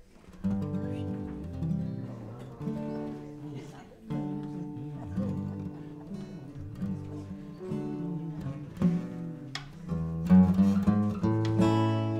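Acoustic guitar strumming chords with short pauses between them, the player trying out a key before the song; a louder strum comes near the end.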